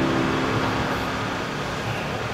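Steady background noise: room tone with a constant low rumble and hiss, and a faint held low tone in the first half second.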